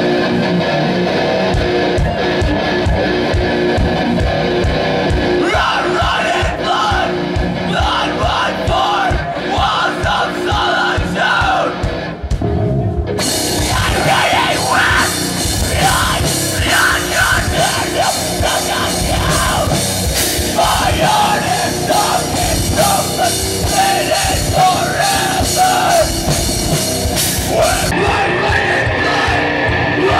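Live heavy rock band playing: distorted electric guitars, bass and drum kit with a singer over them. The sound gets fuller and brighter about thirteen seconds in.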